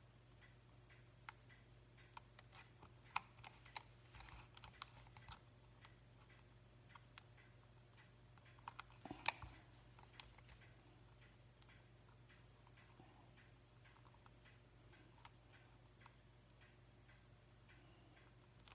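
Near silence: faint, scattered clicks and taps of fingers and a small hand tool fitting small die-cut paper pieces on a craft mat, busiest around four and nine seconds in, over a low steady hum.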